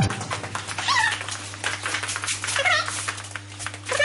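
Two high, wavering, meow-like cries from a woman's voice, one about a second in and one near three seconds, over a steady low hum.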